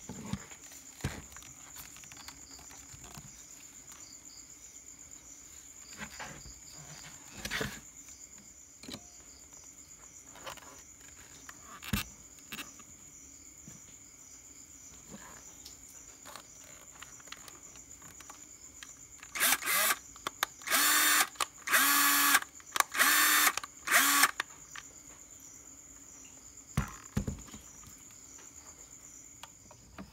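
Black & Decker cordless drill's motor whirring in five or six short trigger-pulled bursts, each under a second, about two-thirds of the way in: the drill running on its newly fitted 32650 LiFePO4 battery pack in place of the Ni-Cd one. Before that come light clicks and rustles of handling as the pack is strapped on with cable ties.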